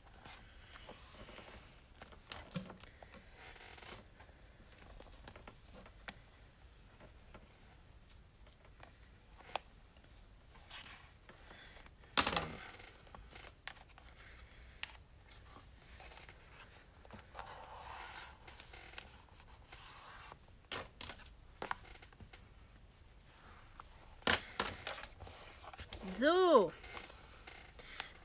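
Paper and card being handled and pressed flat by hand on a tabletop while album pages are glued: faint rustling and scattered taps, with one louder, brief paper noise about twelve seconds in and a cluster of sharp taps later on. Near the end a woman makes a short voiced sound.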